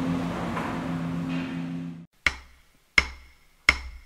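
A steady hum and hiss that cuts off about two seconds in, then three sharp wooden clicks, evenly spaced a little under a second apart: drumsticks clicked together to count in the band.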